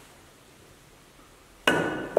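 A single sharp click of a snooker shot near the end: the cue strikes the ball on a full-size snooker table, with a brief ringing tone. It comes after near-quiet room tone.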